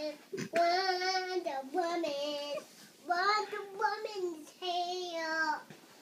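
A young girl singing her own made-up song in long held notes with a wavering pitch, several phrases with short breaks between them.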